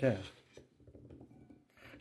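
Faint rubbing and light ticking of cut asparagus pieces being handled on a bamboo cutting board.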